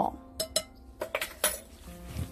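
Metal measuring spoon clinking against a glass mixing bowl and being set down: several short, sharp clinks.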